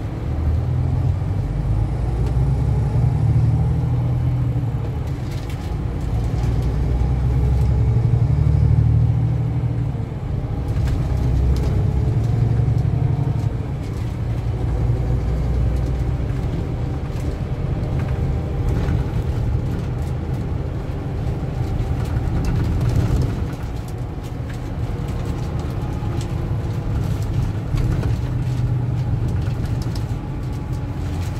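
Coach's diesel engine and road noise heard from inside the passenger cabin on the move: a steady low rumble that swells and eases every few seconds, with a few light knocks and rattles.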